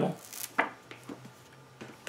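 Quiet handling noise from a book being handled: a short rustle about half a second in, then a few separate light taps.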